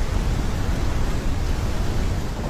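A large waterfall's falling water rushing steadily: an even, full noise with a heavy low rumble.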